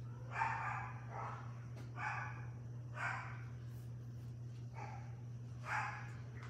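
A dog barking in short single barks, about six of them roughly a second apart, over a steady low hum.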